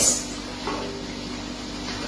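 A metal spoon stirring turmeric dye in a stainless steel pot, over a steady low hum.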